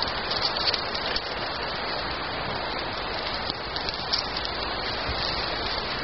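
Small fire of dry leaves and twigs burning: a steady hiss with scattered light crackles.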